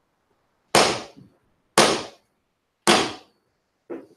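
Three loud raps of a gavel, about a second apart, each dying away quickly in the room.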